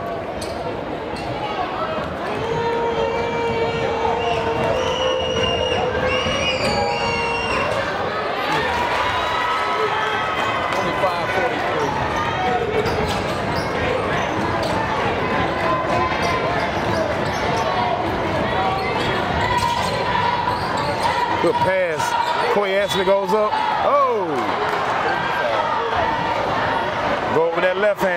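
A basketball dribbling and bouncing on a gym's hardwood floor, over the steady shouting and cheering of a crowd of spectators in the gym.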